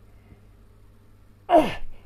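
A man's loud, breathy voiced exhale, falling steeply in pitch, about one and a half seconds in: the strain of lowering his legs from a prone back-bend leg raise.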